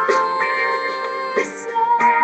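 Music: a woman singing long held notes over a backing accompaniment, a new chord struck at the start and again about a second and a half in.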